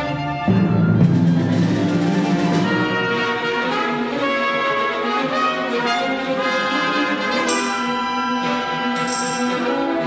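Orchestra playing, with brass prominent over strings and timpani. A louder full entry with weight in the low end comes about half a second in, then sustained chords carry on.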